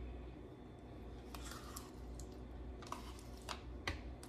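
Spoon scooping sour cream out of a plastic tub and scraping it off into a blender jar: a few faint scrapes and soft, squishy clicks, over a faint low hum.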